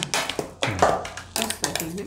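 A steel spoon clinking and scraping against a stainless-steel plate as thick green paste is scooped, a few short knocks.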